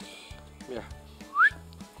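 A short, rising whistle about one and a half seconds in, over a steady background music bed.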